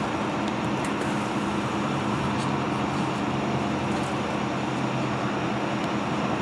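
A steady engine hum, an idling motor running without change, with a few faint clicks over it.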